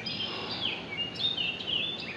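Birds calling: a series of short, high chirps and whistles, some gliding down in pitch, over a faint steady background noise.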